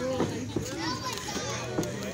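Ringside spectators' voices, children's among them, calling out and chattering.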